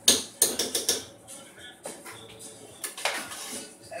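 A utensil knocking and scraping against a metal saucepan of mashed potatoes as they are stirred and mashed. There is a quick run of sharp clacks in the first second, then a few scattered knocks.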